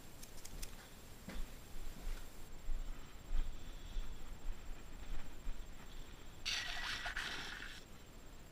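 Handling and walking noise as a container of compost is carried across the room: a few light clicks, soft footstep-like thumps, then a loud rustle for about a second and a half near the end.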